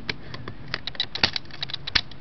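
Quick irregular small clicks and taps of a clear plastic DLO VideoShell iPod touch case being pressed together by hand, its snap connectors clicking into place.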